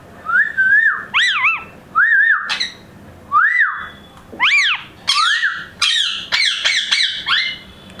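Indian ringneck parakeet giving a run of short, clear whistles, each rising then falling in pitch, in quick groups of one or two with brief pauses between.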